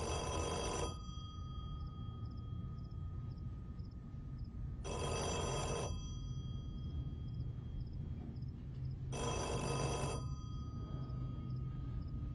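Black rotary-dial desk telephone ringing: three rings, each about a second long, about four and a half seconds apart.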